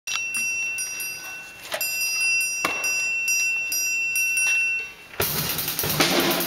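Percussion ensemble opening a piece: a metal bell-like percussion instrument struck in a run of clear, ringing high notes, then drums and cymbals come in together about five seconds in.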